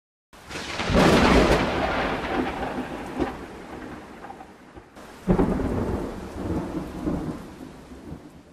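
Two rolls of thunder over steady rain: the first swells about a second in and fades slowly, the second breaks suddenly about five seconds in and dies away.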